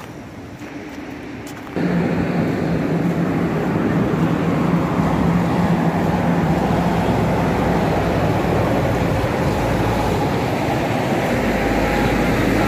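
Heavy diesel truck engine running loud and close, with a steady low hum over a broad rumble. It comes in abruptly about two seconds in.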